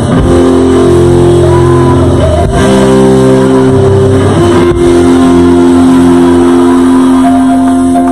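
Live church worship music, loud: sustained instrumental chords over a held bass that change about every two seconds.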